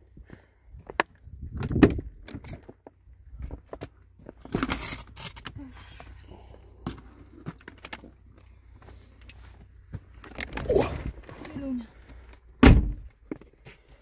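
Handling noises at a Range Rover L322's open front door: scattered clicks, knocks and rustling as someone gets into the seat, with a heavy thump near the end.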